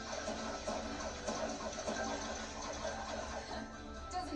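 Background music from an animated show playing on a television, with held notes over a busy, irregular texture.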